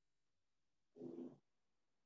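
A cat giving one short, faint meow about a second in.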